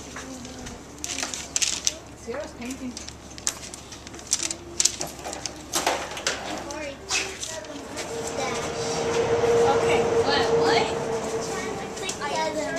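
Background chatter of children's voices with scattered sharp clicks and knocks, and a steady held tone that swells for a few seconds in the second half.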